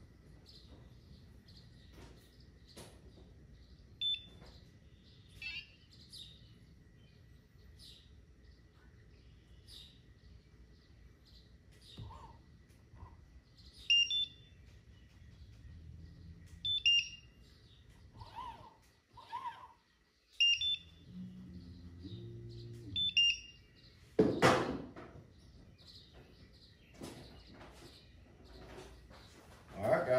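Short electronic beeps from a MotorGuide trolling motor's electronics while its remote is being synced: a single high beep a few seconds in, then four short two-tone beeps about three seconds apart. A loud knock follows a little after the last beep, over a faint steady high tone.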